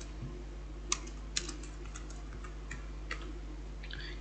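Scattered clicks of a computer keyboard and mouse as code is pasted into an editor: two sharper clicks about one and one and a half seconds in, then a few fainter ones, over a steady low hum.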